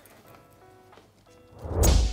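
Soft background music, then near the end a loud whoosh with a deep low boom, typical of an editing sound effect.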